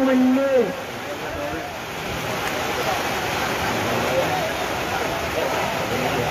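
A man's voice holds a long drawn-out syllable at the start and breaks off. It gives way to a steady rushing background noise with faint distant voices and shouts.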